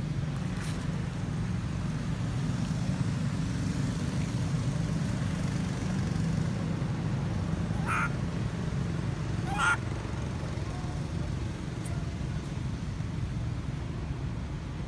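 Steady low outdoor rumble, like distant traffic. About eight and ten seconds in come two short, high-pitched squeaks.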